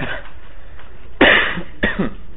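A person coughs twice: one loud cough a little over a second in, then a shorter one just after.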